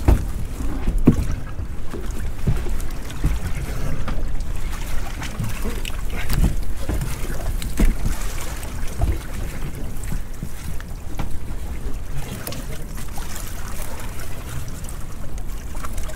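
Wind buffeting the microphone over a steady rumble of a small boat at sea, with scattered knocks and rattles as rope-mesh lobster pots are handled and stacked on deck.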